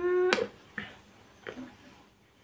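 A kiss on the cheek: a drawn-out hummed "mmm" that ends in a loud lip smack about a third of a second in. A couple of faint lip clicks follow.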